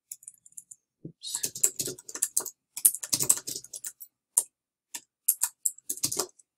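Typing on a computer keyboard: irregular key clicks in quick runs, starting about a second in.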